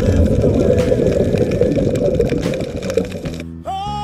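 Loud, muffled underwater rushing and bubbling, a scuba diver's exhaled bubbles picked up by the underwater camera, mixed with music. The rushing cuts off shortly before the end, and a new song starts with a long held note.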